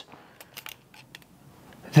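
A few light, sharp clicks from a retractable tape measure being handled as its steel blade is held out to measure.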